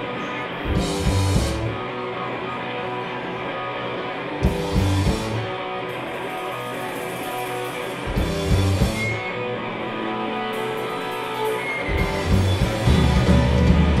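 Live rock band with electric guitars and drums playing the opening of a song: a held guitar chord rings on under three short full-band hits, about four seconds apart. The full band comes in near the end.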